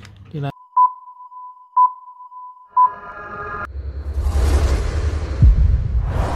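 Electronic intro sound effect: a steady high beep tone with three short pips about a second apart, then a brief buzzy chord. After that comes a swelling whoosh over heavy bass, with a sharp deep hit near the end.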